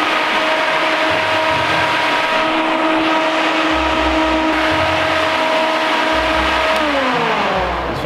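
Flex-A-Lite electric radiator fan, powered from a jump-starter pack, running at full speed with a steady hum and rush of air, then winding down with a falling pitch about seven seconds in.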